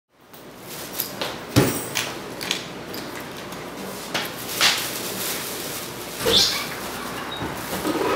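Handling noise in a room: scattered knocks and clicks, several in the first two and a half seconds and a few more later, over a steady hiss, fading in at the start.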